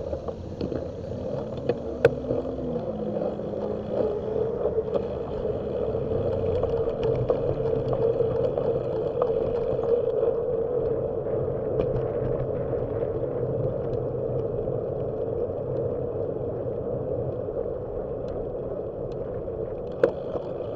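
Wind rushing over the microphone of a camera mounted on a moving bicycle, with road rumble and small rattles from the bike; it grows louder over the first eight seconds or so.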